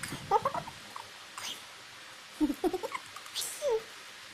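A woman's stifled laughter behind her hand, in several short choppy bursts: about half a second in, and again in a longer run near the end.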